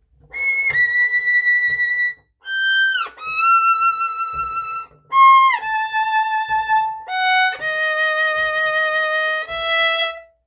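Solo violin playing a slow passage high on the instrument, starting on a high C-sharp. Long held notes with vibrato step downward in pitch, joined by audible downward slides as the hand shifts position.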